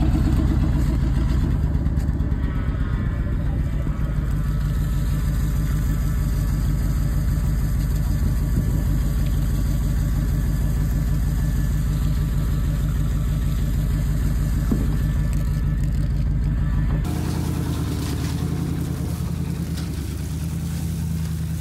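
An engine running steadily with an even, fast low pulse, while water gushes and splashes onto the ground. About three-quarters of the way through, the low rumble suddenly drops off.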